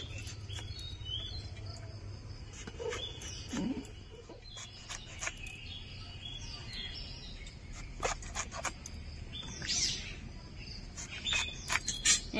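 Birds chirping in the background, with a scatter of sharp clicks and knocks as a brinjal is sliced into thick rounds on a bonti blade and the rounds drop into a steel bowl; the loudest clicks come about two-thirds of the way in.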